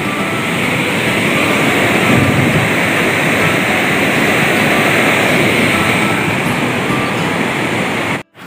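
Very loud, steady rushing of a swollen, silt-laden river in flood, its turbulent water churning below a bridge. The flood comes from a dam releasing its water.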